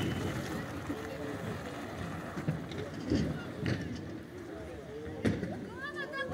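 Faint voices of people at the trackside over a low noisy background, with a few sharp knocks, the clearest near the end.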